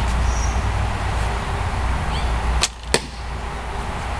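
A homemade hickory snake bow of about 35 lb draw is shot, a little past halfway through: a sharp snap of the string on release, then the arrow strikes about a third of a second later. Before the shot there is a steady low background rumble, and it is quieter afterwards.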